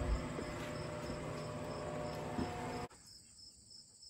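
Crickets chirping steadily in an even, pulsed rhythm, over a steady low hum that cuts off abruptly about three seconds in, leaving only the faint chirping.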